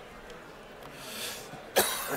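A man coughs once into his fist close to a microphone: a soft breath, then one sharp cough near the end.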